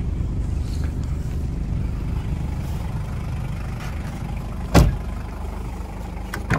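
A car door of a 1993 Toyota Land Cruiser Prado shuts with a single loud thump about five seconds in, over a steady low rumble.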